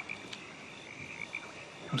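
Faint background chorus of frogs croaking, short calls repeating irregularly over a steady high hum of night ambience.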